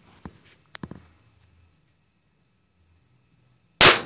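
One loud, sharp bang near the end as a charged high-voltage capacitor discharges through a small oval TV speaker, blowing apart its voice-coil wires, with a short ringing tail. A few faint small clicks come before it.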